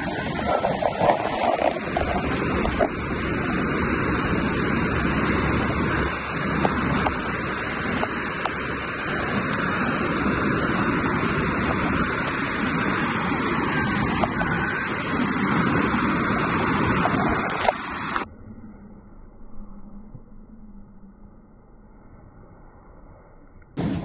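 Wind buffeting the microphone: a loud, gusting rush that cuts off suddenly about eighteen seconds in, leaving only a faint, muffled background.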